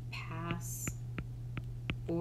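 Soft, half-whispered speech early on, with a few light, sharp clicks from a stylus writing on a tablet screen, over a steady low hum.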